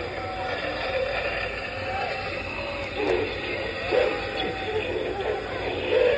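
Indistinct voices of people talking, over a steady low background hum.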